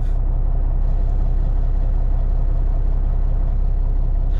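Heavy-duty 2005 Kenworth truck's diesel engine idling, heard from inside the cab as a steady, low hum.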